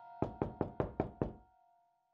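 Six rapid, evenly spaced knocks on a door, over background music that fades away.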